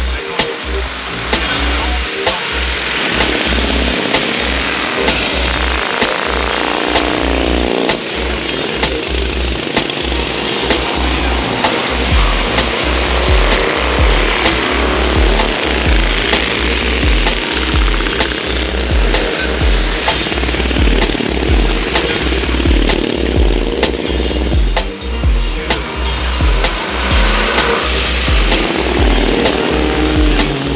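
Vintage three-wheeled cyclecars with exposed V-twin engines racing past one after another. Their rough engine notes rise and fall as they pass. Music with a steady, regular beat plays along with them.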